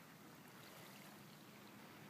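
Near silence: faint, steady outdoor ambience with a soft even hiss.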